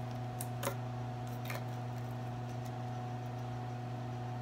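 A steady low hum with a few light clicks in the first couple of seconds, from a plastic paint cup and its lid being handled.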